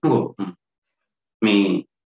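A man's voice giving two short grunt-like vocal sounds, one at the start and one about a second and a half in, with a pause of silence between them.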